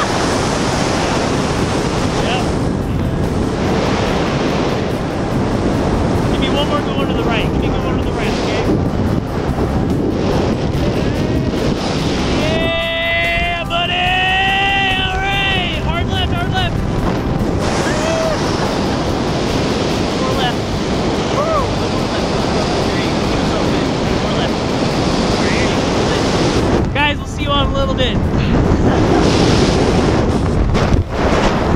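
Steady rush of wind buffeting an action camera's microphone during a tandem parachute descent under canopy. A long whooping yell rises and falls in pitch about 13 to 17 seconds in, and a shorter one follows near the end.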